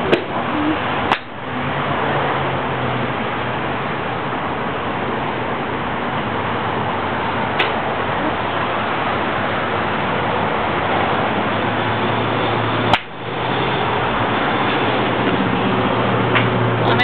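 Golf driver striking a ball off a range mat, two sharp cracks about a second in and near the end, over a steady rushing noise.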